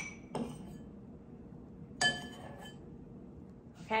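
Metal spoon clinking against a small glass jar as powder is spooned in. A ringing clink comes at the start and another about two seconds in, with a faint tap between.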